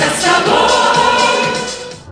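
Mixed group of men and women singing an estrada pop hit together into microphones, fading out near the end.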